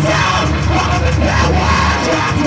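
Loud live rock band playing: yelled vocals over a heavy, dense bass and a driving beat.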